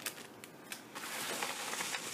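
Paper and a padded bubble mailer being handled, crinkling and rustling: a couple of light clicks at first, then steady crinkling from about a second in.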